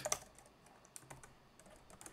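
Typing on a computer keyboard: a few faint keystrokes at an uneven pace.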